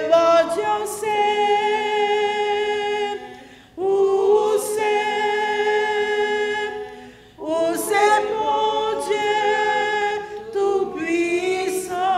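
A woman singing a hymn without accompaniment, in phrases of long held notes about three seconds each with short breaths between.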